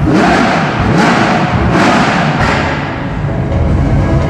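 Lamborghini Huracán Super Trofeo race car's V10 engine revving as the car drives in, its pitch rising and falling a few times, over loud music.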